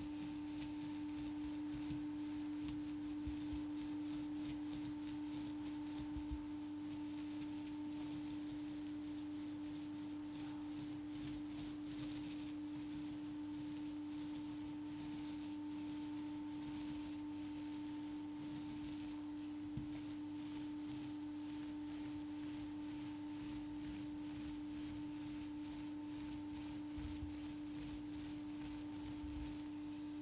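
A steady, unchanging single-pitch hum runs throughout. Over it, a small paint roller crackles and swishes back and forth as it lays wet grey primer onto a boat's cabin roof.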